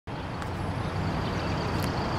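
Remote-control Sbach aerobatic model airplane's engine droning steadily in flight, growing slightly louder.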